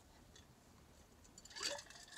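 Near silence while a person drinks from a bottle, with one faint short drinking sound near the end.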